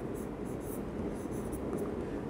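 A pen writing by hand on a board surface, making short irregular strokes as a phrase is written out.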